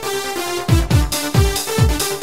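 Mid-1990s Euro house/Eurodance track: held synth chords, then a four-on-the-floor kick drum comes in well under a second in, about two beats a second, with hi-hats joining it.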